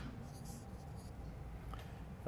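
Felt-tip marker writing on flip-chart paper, a few short strokes in the first second or so, then a faint tick near the end.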